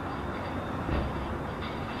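Steady low rumble with a faint hiss: background room noise, with no distinct event.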